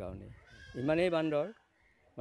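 A man speaking Assamese, holding one hesitant word with a wavering pitch for under a second about halfway through, then a short pause.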